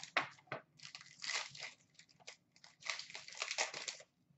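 Plastic wrapping crinkling and tearing, with cardboard rustling, as a sealed Upper Deck hockey card box is unwrapped and opened by hand. It comes in uneven bursts: a few short crackles, then two longer rustles, one in the middle and one near the end.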